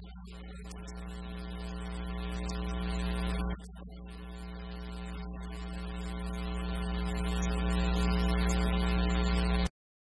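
A church organ holds a low, sustained chord that swells steadily louder. The level drops abruptly about three and a half seconds in, then builds again before the sound cuts off suddenly near the end.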